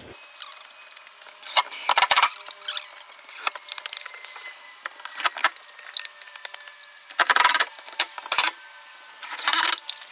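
Cordless drill driving screws into a wooden wall in about five short bursts, some spread out and several close together near the end.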